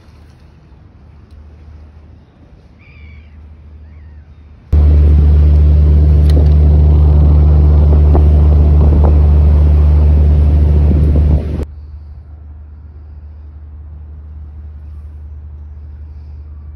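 Passenger ferry under way, heard from its open deck: a loud, steady low engine rumble mixed with wind and water noise. It cuts in suddenly about five seconds in and cuts off just as suddenly about seven seconds later, with a quieter low hum on either side.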